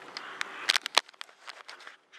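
Handling noise from a camera phone being turned around in the hand: a rapid run of about a dozen sharp clicks and knocks, loudest about a second in, then growing fainter.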